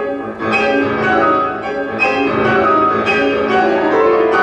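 Two grand pianos playing classical music in a concert hall, loud full chords ringing on, with fresh chords struck about half a second in and again around two and three seconds in.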